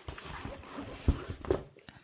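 A poured-glue diamond painting canvas, under its plastic cover, being rolled and flattened on a table: rustling and crinkling, with two sharp knocks a little after a second in.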